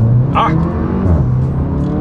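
2024 Porsche Macan's two-litre turbocharged four-cylinder pulling hard, heard from inside the cabin: the revs climb, drop sharply about a second in as the seven-speed dual-clutch upshifts on the paddle, then pull again in the next gear.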